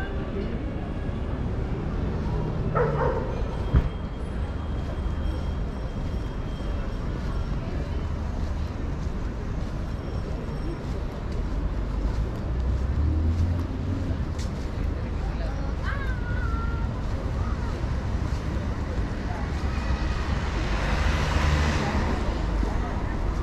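Busy street ambience: a steady low rumble of traffic and engines, with snatches of passers-by talking. A single sharp click comes about four seconds in, and a louder hiss swells near the end.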